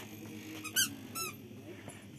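Two short, high-pitched squeaks about half a second apart, the first the louder, like the squeakers in a toddler's shoes as the child steps.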